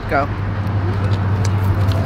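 A steady low mechanical hum under outdoor background noise, with a short spoken phrase at the start.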